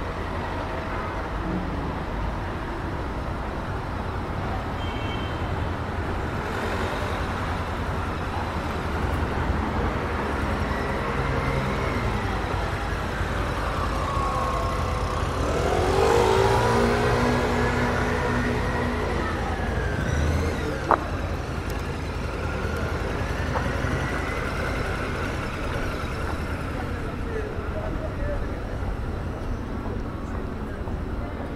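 City street traffic noise, with a slowly rising and falling wail through the middle, like a distant siren. About halfway through, a motor vehicle engine revs up, and this is the loudest sound; a single sharp click follows a few seconds later.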